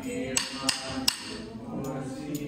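A hymn sung during a eucharistic procession, with three sharp, ringing clinks about a third of a second apart in the first half.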